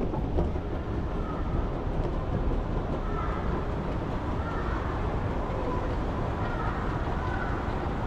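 Railway station ambience: a steady low rumble through a large platform hall, with no distinct events.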